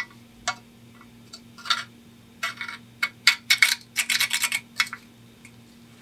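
Steel screwdriver tip tapping and scraping on the rusty pressed-steel body of a Nylint toy truck: light metallic clicks, a few at first, then quick rattling runs of taps in the second half.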